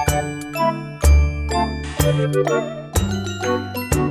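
Background music: a light, tinkling tune of bell-like notes over a low note that comes in about once a second.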